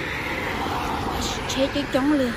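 A car driving past on the street: steady tyre and road noise that swells and fades again.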